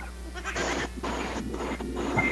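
Soft, breathy laughter heard over a video-call line, in a few short airy bursts.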